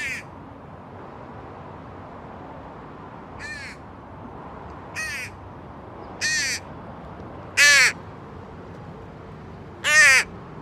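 A crow cawing, a string of short calls a second or so apart that grow louder, the loudest near the end.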